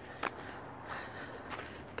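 Faint footsteps on an asphalt alley, with one louder click near the start.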